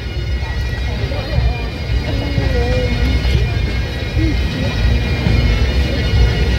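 Wind rumbling on the microphone over crowd chatter, with steady bagpipe drone tones held unchanging in the background; no tune is being played.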